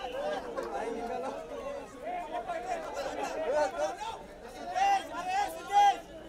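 Crowd chatter: many overlapping voices of a pressing throng of press photographers and onlookers talking and calling out at once, with two loud shouts near the end.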